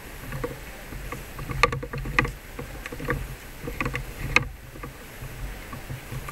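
Low rumble and thumps of handling noise on a handheld camera's microphone, with a few sharp clicks about one and a half, two and four and a half seconds in.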